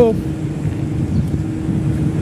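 Steady low rumble of outdoor street noise with a constant hum, after the end of a spoken word at the very start.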